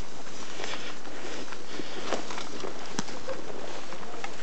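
Footsteps of people walking through grass and forest undergrowth, with rustling and a few sharp crunches or twig snaps.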